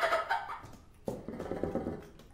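Solo bassoon playing extended techniques: a bright, noisy note fades away in the first half second. Then, about a second in, a low rasping tone with a fast pulsing rattle starts suddenly and stops near the end.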